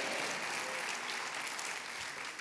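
A congregation applauding in response to the preacher's call for an "amen", the clapping slowly dying away.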